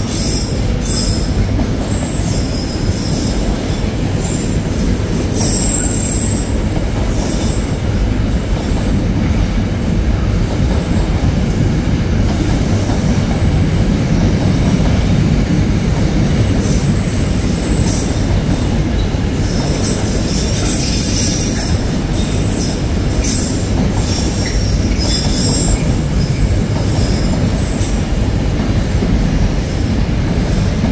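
Container freight train's wagons rolling past with a steady, loud rumble of wheels on rail, broken now and then by short high-pitched squeals.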